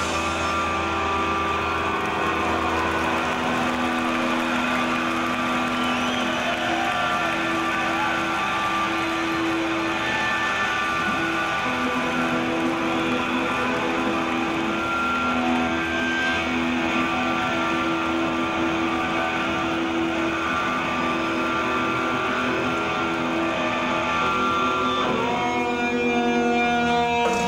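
Live indie-rock band playing an instrumental passage with no singing: electric guitars and bass guitar hold long sustained notes over a steady wash of sound, with the band picking up into a louder strummed section right at the end.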